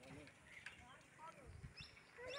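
Near silence: faint outdoor background with distant voices and a few short faint calls.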